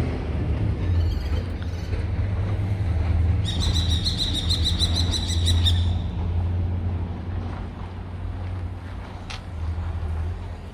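Outdoor rumble with a steady low buffeting, like wind on the microphone. In the middle, a bird gives a rapid run of repeated high notes, about six a second, for a couple of seconds.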